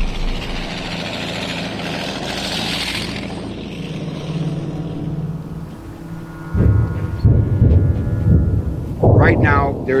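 A heavy tracked self-propelled gun driving past, its engine and tracks making a steady noise. About six and a half seconds in, deep irregular rumbles take over.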